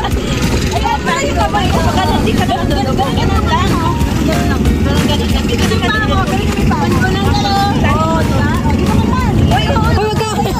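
Several people's voices calling out over the water, many short rising and falling calls throughout, over a steady loud low rumble.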